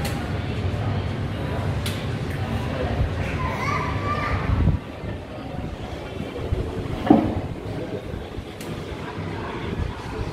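Restaurant interior ambience: indistinct background voices over a low steady rumble that drops off about halfway through, with a brief knock a couple of seconds later.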